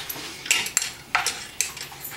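Hard objects knocking and clinking together, about four sharp clinks within two seconds.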